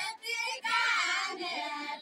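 A group of women singing a Deuda folk song in high voices, the melody rising and falling in phrases, with a short break between phrases near the start.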